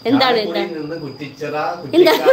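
A woman giggling with her hand over her mouth: a quick run of short pulses near the start, and another near the end.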